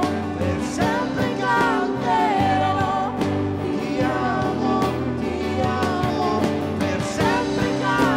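A live church worship band playing and singing: voices over guitars, drum kit and keyboard.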